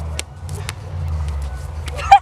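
A low steady rumble outdoors, with a few sharp clicks.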